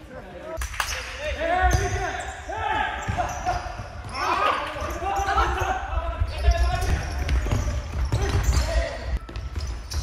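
Futsal play on an indoor court: sneakers squeaking on the hall floor in short rising and falling chirps, scattered thuds of the ball being struck and bouncing, and players calling out, all echoing in the hall.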